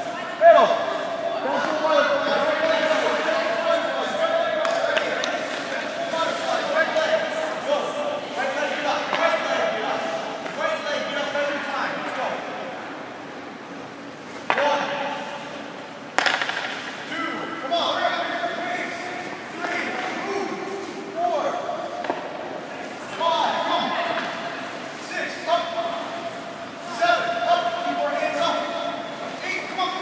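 Voices echoing in a large indoor ice rink, with a few sharp knocks, one loud hit about half a second in and two more around the middle.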